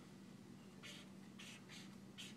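Faint strokes of a marker on flip-chart paper: three short scratches about a second in, as a small box is drawn.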